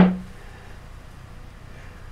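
A single knock at the very start as a block of white modelling clay is set down on a plate, with a brief low ring that dies away within a fraction of a second; then only faint room tone.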